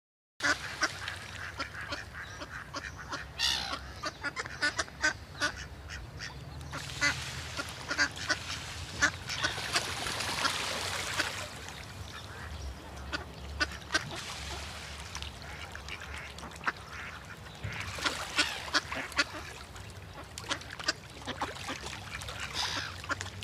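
Ducks quacking: many short calls in quick, irregular succession, with a stretch of steadier hiss around the middle.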